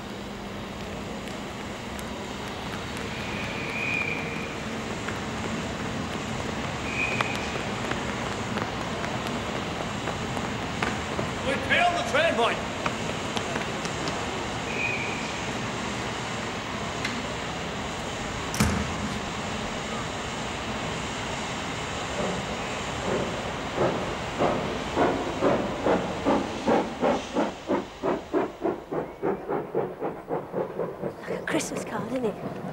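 Steam railway station sounds: a steady hiss of steam, a whistle about twelve seconds in and a single sharp clank a little later. Then a steam locomotive starts chuffing, the beats quickening over the last several seconds as the train pulls away.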